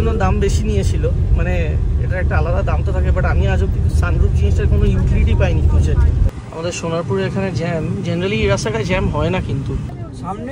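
A man talking inside a car cabin over the low rumble of the moving car, which stops suddenly about six seconds in.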